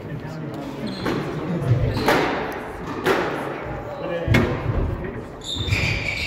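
Squash rally: the ball hit by rackets and off the walls in four sharp cracks about a second apart, echoing in the court, with a high squeak of court shoes on the floor near the end.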